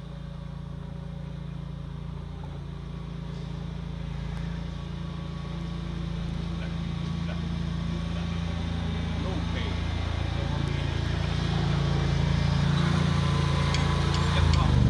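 An engine running steadily at a constant speed, growing gradually louder.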